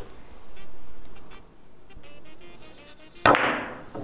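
Billiard shot on a carom table: one sharp clack about three seconds in, ringing briefly. Before it there is only faint low noise with a few light ticks.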